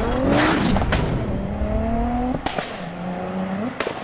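Car engine accelerating hard through the gears, as a sound effect. Its pitch climbs, drops at each of three gear changes with a short sharp crack, and climbs again, over tyre and road noise.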